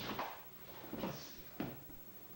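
About three short thumps and scuffs as an aikido partner is thrown down and pinned: bodies and feet hitting the dojo floor.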